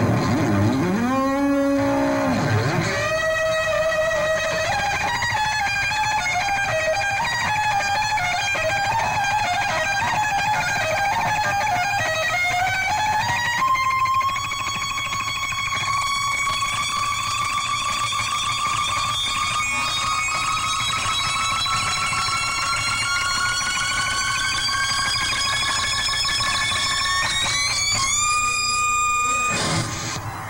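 Distorted electric guitar played alone. It opens with swooping whammy-bar dips, then a fast run of two-hand tapped notes, then one long sustained high note that slowly rises in pitch and jumps higher near the end.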